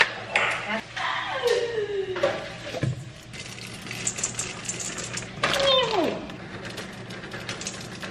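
Chocolate chips poured from a bag into a stainless steel mixing bowl of batter, heard as a quick run of small clicks from about four seconds in. Brief wordless voice sounds come before and among them, one sliding down in pitch.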